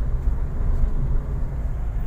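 Steady low rumble of engine and road noise heard inside the cabin of a 2016 Toyota Avanza Veloz 1.5 automatic driving along in D.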